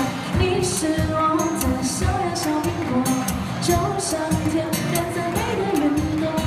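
Live Chinese pop song: a woman singing into a microphone over acoustic guitar, with a steady beat.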